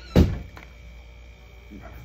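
A single dull thump right at the start, then quiet room tone.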